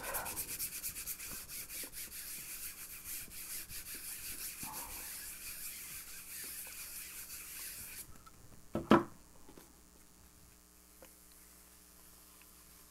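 A sheet of paper rubbed fast and hard with a round hand tool over a gel printing plate, burnishing it to pull a monotype print. The rubbing stops abruptly about eight seconds in, and a single short knock follows a moment later.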